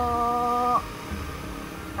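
A voice holding a drawn-out hesitation sound at one steady pitch for under a second. After it comes a low rumble of motorcycle and traffic noise.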